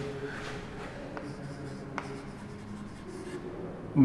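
Chalk writing on a chalkboard: soft scratching as a word is written, with a couple of short sharp taps of the chalk against the board.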